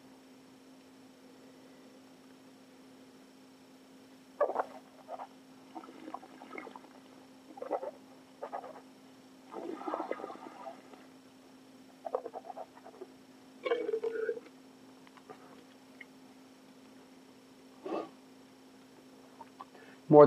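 Soft mouth sounds of red wine being tasted: scattered sniffs and slurps as the wine is nosed and drawn in over the tongue, with a short murmur. A steady low hum runs underneath.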